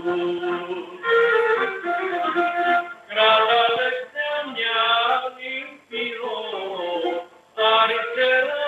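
Cretan lyra bowing a folk melody over a strummed laouto, the tune moving in short phrases with brief pauses between them.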